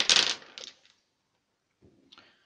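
A handful of dice rolled onto a wooden tabletop: a loud clatter at the very start, then a few smaller clicks as they tumble to rest, all over in under a second.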